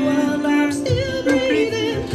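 A man singing a slow pop ballad, holding long notes with a slight waver, over soft backing music.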